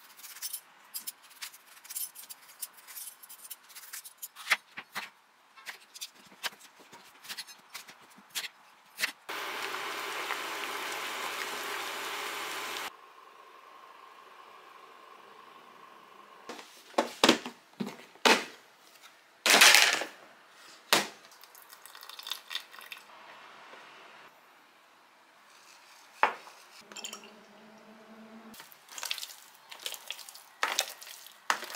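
Kitchen food-prep sounds: a hand peeler scraping and clicking against peaches in quick repeated strokes, then a steady rushing noise for a few seconds that starts and stops abruptly. After that come several sharp glass-and-utensil clinks and knocks around a swing-top glass jar.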